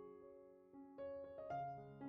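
Quiet background piano music, with new notes sounding about a second in and again half a second later.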